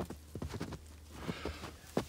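Footsteps crunching in snow: a quick run of short crunches that thins out after about a second, with one sharp click near the end.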